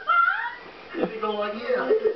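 A person's voice making wordless, high-pitched sounds. It rises in pitch at the start, then about a second in it swoops down into a lower drawn-out tone.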